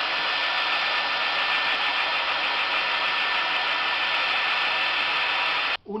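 Handheld hair dryer running steadily, a rush of air with a steady motor whine, stopping suddenly near the end.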